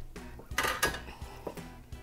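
A raw turkey set down onto the wire rack of a stainless steel roasting pan, the rack clattering and knocking against the pan for a moment about half a second in. Soft background music runs underneath.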